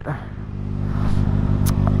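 Kawasaki ZX-6R 636 inline-four engine pulling away from a stop, growing steadily louder, with wind noise rising as the bike gathers speed.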